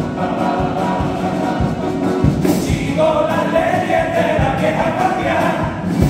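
Male carnival comparsa choir singing in harmony over strummed guitars and a bass drum beating about twice a second. The voices come in louder about halfway through.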